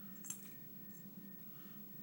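One faint, short metallic click a fraction of a second in, as a metal tool picks small items such as a safety pin out of an AK-47 cleaning kit tube. A low steady room hum sits under it.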